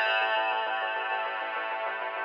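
Background electronic music: a loud passage cutting in abruptly with dense sustained chords over a fast pulsing rhythm.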